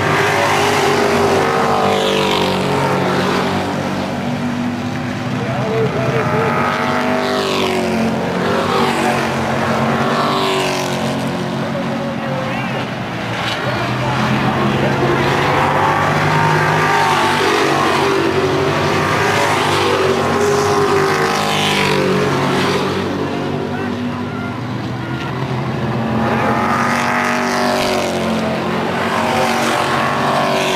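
Sportsman-class stock cars racing at full throttle on an oval track. Several engines run together, and their pitch sweeps up and then falls away again and again as cars pass close by.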